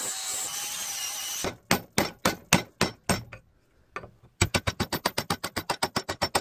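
Angle grinder grinding the rusty steel head of a hammer clamped in a vise, stopping about a second and a half in. Then sharp metallic knocks come about four a second, and after a short pause a faster, even run of knocks follows.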